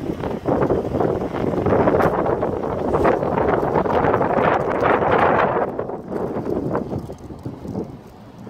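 Wind buffeting the microphone in irregular gusts, loudest through the middle and easing near the end.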